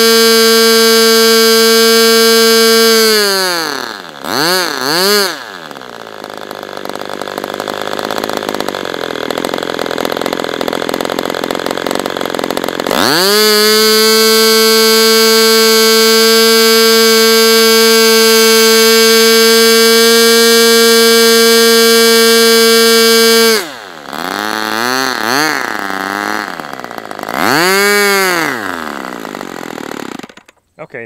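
Super Tigre G40 two-stroke glow engine running at full throttle with a steady high-pitched whine at about 13,500 rpm. About three seconds in it drops to a low idle with two quick blips. Around 13 s it climbs back to full speed, drops again near 23 s with more blips and a short rev, and stops at the very end.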